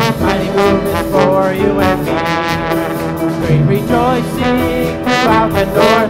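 Instrumental break in an upbeat worship song: piano and drum kit playing, with held melody notes over them and no singing.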